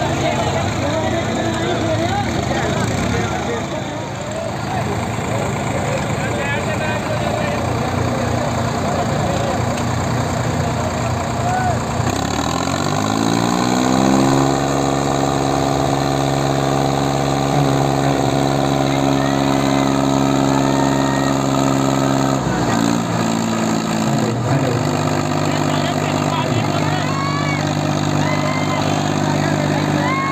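Diesel tractor engine revving up about halfway through and holding at high revs under load in a tractor tug-of-war. Its speed drops suddenly about three-quarters of the way in, then it runs on at a lower steady speed. A crowd chatters underneath.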